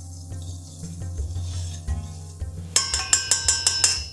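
Soft background music, then from a little under three seconds in, a rapid run of ringing metal clinks: a spoon stirring against the side of a stainless-steel saucepan of boiling sugar syrup.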